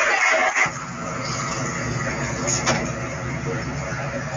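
Voices and noise from a group cut off abruptly about half a second in, giving way to the steady low rumble of cars driving along a road, with a single sharp click partway through.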